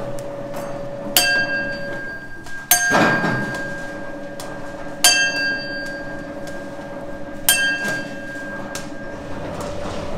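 Candy rope sizer running with a steady hum as hard-candy rope feeds through its rollers. Four sharp metallic clinks ring out over it, each ringing on for about a second, a couple of seconds apart.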